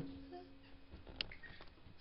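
The last of a child's drum kit ringing, fading away quickly, then a quiet room with a single light tap about a second in.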